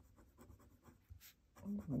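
Medium nib of a Pilot Custom 823 fountain pen scratching faintly on paper in quick, short strokes as handwriting goes on. A voice starts near the end.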